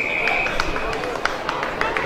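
An Australian rules football umpire's whistle, one steady blast that ends about a second in, stopping play at a pack over the ball. Short sharp knocks follow.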